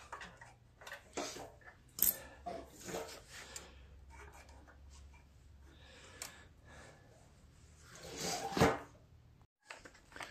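Small clicks and taps of metal and plastic parts being handled and unfastened on a small snowblower engine, scattered through the first few seconds. A louder, longer scraping sound comes near the end.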